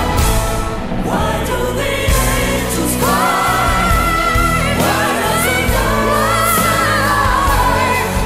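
Live pop song: a female lead vocal with a backing choir over a band track, sung phrases rising into long held notes.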